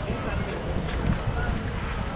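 Wind buffeting the microphone with a steady low rumble, with faint voices of passers-by.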